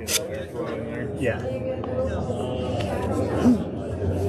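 Indistinct voices chattering in an indoor handball court, with one sharp smack right at the start.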